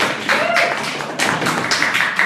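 A small audience clapping: dense, irregular handclaps.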